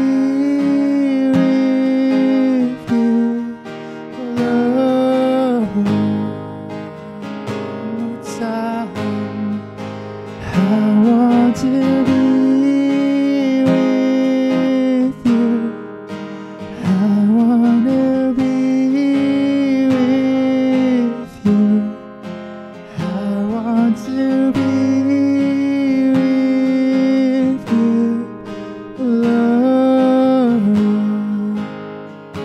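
A man singing a slow worship song to his own strummed acoustic guitar, in long held phrases of a few seconds each with short breaths between.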